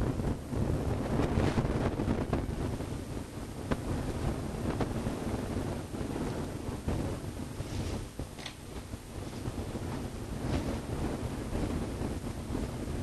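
Uneven low rumbling noise on the microphone, with faint taps and brief squeaks of a marker writing on a whiteboard.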